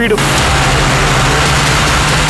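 Loud, steady rushing noise with a low hum underneath: a sound-design effect in a film trailer, starting just as a voice breaks off.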